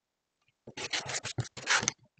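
Rotary cutter blade rolling through the layers of an appliquéd quilt block and onto the cutting mat along an acrylic ruler, trimming the block's edge. The cutting starts about two-thirds of a second in and runs for just over a second in a few close strokes.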